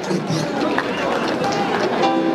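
Audience applauding, a steady dense clatter of many hands clapping.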